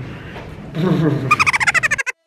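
A person's brief vocal sound, then a rapid, high-pitched fluttering sound, cut off abruptly at the end.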